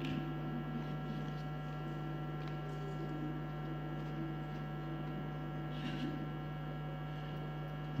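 Steady low electrical mains hum on the audio track, unchanging throughout, with only faint room sound beneath it.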